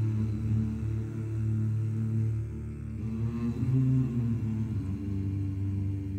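Low male voices humming a slow melody together in unison; the held note shifts to a higher one about three and a half seconds in.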